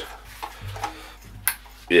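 A few faint clicks and a single sharp click about one and a half seconds in, from a metal hurricane-style LED lantern being handled and set on the bar.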